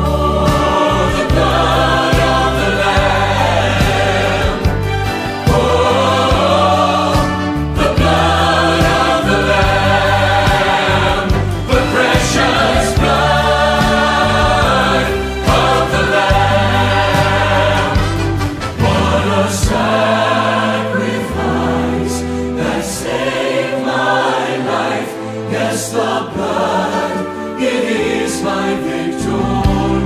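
Church choir singing a worship anthem with instrumental accompaniment.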